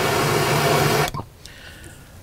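Handheld torch flame hissing steadily as it is held on the pellet-filled end of a tube smoker to light the wood pellets; it cuts off suddenly about a second in.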